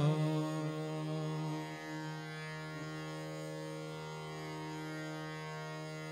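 Hindustani classical raga performance: the male vocalist's held note tapers off about two seconds in, leaving a steady sustained drone of harmonium and tanpura on one pitch with no tabla strokes.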